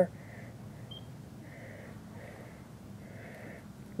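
Breathing through a gas mask: four soft, rasping breaths spread over a few seconds. A single short, high electronic beep sounds about a second in.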